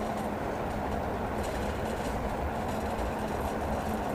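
Steady low background rumble with a faint hum, even throughout, with no distinct events.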